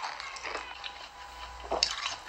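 Faint eating sounds from an ASMR eating clip: a few soft clicks as a clear, round sphere is bitten at the mouth.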